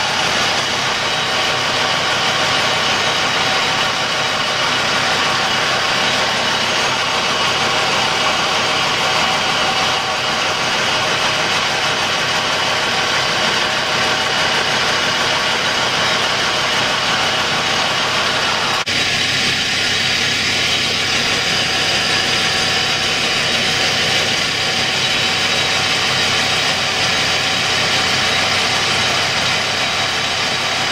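Colchester metal lathe running steadily with its gear whine while a ball-turning attachment cuts a spinning copper bar into a ball. The mix of tones changes abruptly about two-thirds of the way through.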